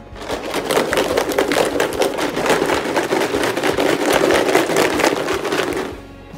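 Plastic bottle of milk, chocolate, vanilla and espresso being shaken hard, the liquid sloshing in quick, dense strokes. It starts suddenly and stops suddenly.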